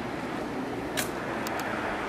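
Wheelchair rolling slowly over gritty asphalt, a steady rumble, with one sharp click about a second in and two quick ticks just after.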